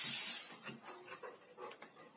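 Dogs moving about on a smooth indoor floor. A short loud breathy burst comes in the first half second, followed by faint scuffs and light ticks.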